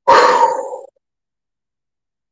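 A woman's loud, breathy wordless cry, lasting just under a second and trailing off.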